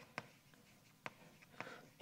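Chalk writing on a blackboard: a few faint, sharp taps and strokes of the chalk.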